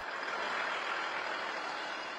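Armoured military vehicle driving along a road: a steady noise of engine and tyres with no clear engine note.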